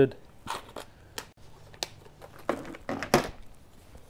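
Hand handling of a plastic organiser box of small metal alligator clips: a few sharp clicks and plastic rattles, with a louder cluster of rustling near the end.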